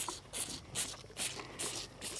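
Cattle feeding: a rhythmic run of short wet, crunchy strokes, about two to three a second, from a calf sucking on a feeding bottle and a cow eating feed.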